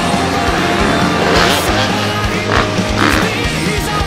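Background rock music with a fast, steady drum beat and cymbal crashes.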